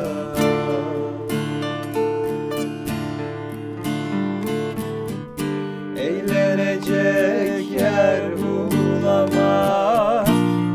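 Two acoustic guitars, one nylon-string classical and one steel-string, strummed and picked together in a folk-song accompaniment. A male voice sings a wavering, held melody over them from about six seconds in.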